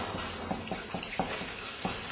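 Two felt-tip markers scribbling quickly over paper: a continuous scratchy rubbing with light taps of the tips against the sheet every so often.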